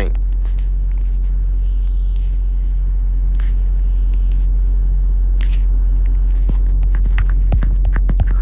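A steady low rumbling hum with no break, with a few faint clicks over it, several of them near the end.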